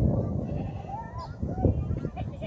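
Wind buffeting the microphone, a steady low rumble, with two short wavering calls about a second in.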